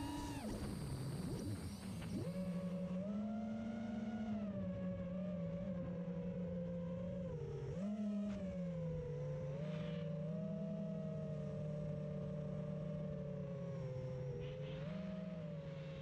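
The electric motors and propellers of an RC drone, heard through its onboard camera, give a steady whine of several close tones. The pitch rises and falls with the throttle, with a short dip about eight seconds in and another near the end.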